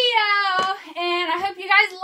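A young woman singing unaccompanied, with long held notes that slide in pitch and a couple of brief breaks.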